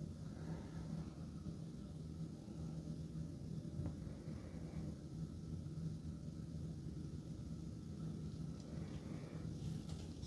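Steady low background hum with a faint even tone underneath: quiet room tone in a high-rise room.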